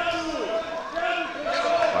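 Men's voices calling out, their pitch rising and falling in long arcs.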